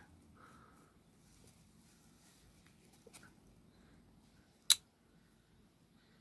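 Near-silent handling of a plastic action figure and its cloth cape, with faint brief rustles and ticks and one sharp click about three-quarters of the way in.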